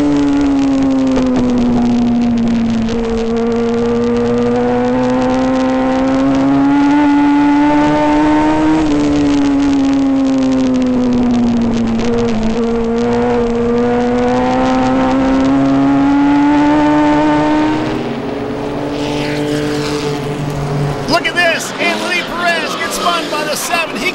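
Onboard sound of a Legends race car's Yamaha motorcycle engine at racing speed. Its pitch climbs along each straight and drops into each turn, over about two laps. About 18 seconds in it gives way to quieter trackside sound, with sharp high squeals near the end.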